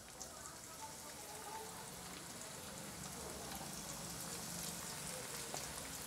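Breaded potato rolls deep-frying in hot oil: a faint, steady sizzle with fine crackles.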